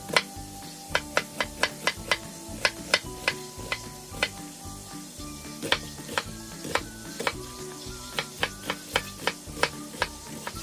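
Chef's knife dicing an onion on a wooden cutting board: sharp knocks of the blade against the board, coming in quick irregular runs of several strikes a second.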